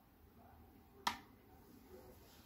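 A single sharp click about a second in, dying away quickly, over a faint background.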